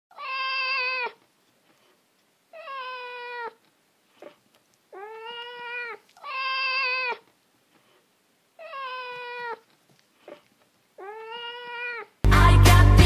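A whippet howling: six long, steady-pitched howls of about a second each, separated by short silences.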